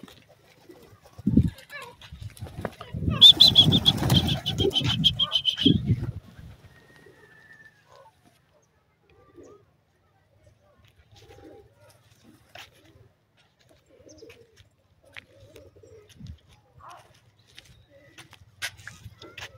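Domestic pigeons cooing, loudest for about four seconds starting some two and a half seconds in, with a high rattling sound over the cooing in the middle of that stretch; only faint scattered sounds follow.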